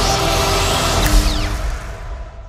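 Disney+ logo sting over the closing trailer music: a rising shimmering whoosh, a deep boom a little past one second in, then falling sparkling glides as it begins to fade.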